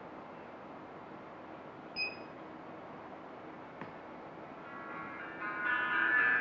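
A single short electronic beep from the car head unit about two seconds in. Music streamed over Bluetooth from a phone then starts playing through the head unit faintly and grows louder as the volume knob is turned up.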